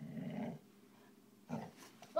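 A dog growling in play: a short, low growl at the start, then a brief second sound about a second and a half in.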